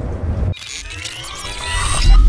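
Street background for about half a second, then a sudden cut to an electronic outro jingle: several synth tones rising together over about a second and a half.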